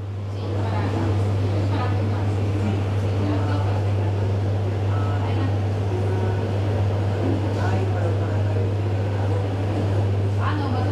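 A steady low hum under a background of noise, with faint indistinct voices.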